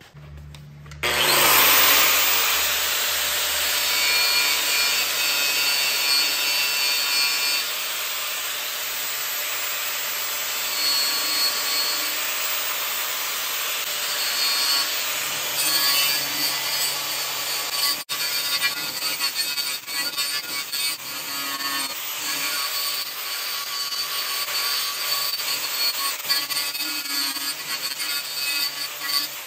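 Electric angle grinder with a flap disc grinding the cracked aluminum water tank, cleaning the metal back before welding. The grinder comes up to speed about a second in, then runs as a steady whine under the noise of the disc on the metal, with a short break about two-thirds of the way through.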